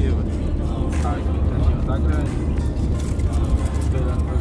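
Steady low road and engine rumble of a Citroën car driving along, heard from inside the cabin.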